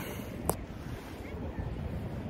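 Wind buffeting the microphone over a steady rush of water as the opened river mouth drains the lagoon to the sea, with one sharp click about half a second in.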